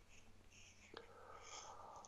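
Near silence: faint room tone, with one faint click about a second in.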